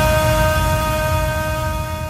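The closing held chord of a synthwave track, one steady synthesizer chord over a low rumble, fading out.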